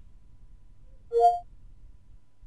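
Windows 10 Cortana's listening chime: a short, bright two-tone electronic chime about a second in, signalling that the voice assistant has woken and is listening for a command.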